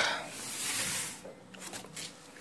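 Rustling of a cardboard box being handled, fading out about a second in, with a few faint rustles near the end.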